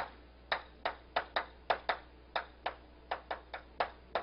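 Chalk tapping and clicking against a chalkboard as words are written and underlined: about a dozen short, sharp taps at an uneven pace, roughly three a second.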